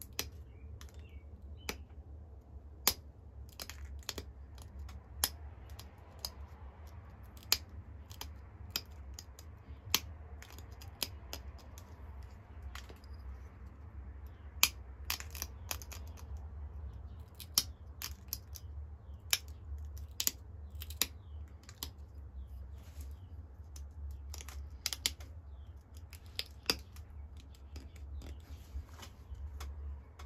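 Flint Ridge flint being pressure flaked: sharp clicks as small flakes snap off the edge of the point, irregularly about once a second, over a steady low hum. This is the finishing stage, straightening the edges into final shape.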